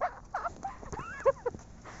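A woman's voice, muffled through a scarf over her mouth: a few short, broken syllables with gaps between them.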